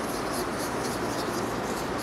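Chalk scratching on a blackboard in short, quick repeated strokes, about three or four a second, as small looping coils are drawn, over a steady background hiss.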